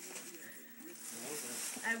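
Soft voices murmuring in the second half, over a faint rustle of tissue paper being pulled from a gift box.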